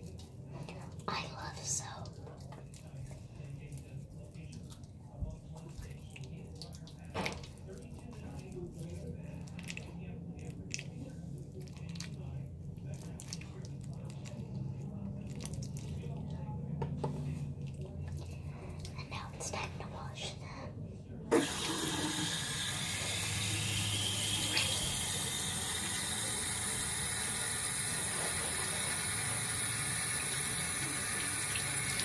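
Soapy hands rubbed together, with faint wet squishes and small clicks of lather. About two-thirds of the way through, a sharp click as a faucet is turned on, then water runs steadily into a sink.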